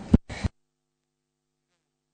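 Two short knocks of handling noise on a desk microphone in the first half second, the first one loud. The audio then cuts out to dead silence.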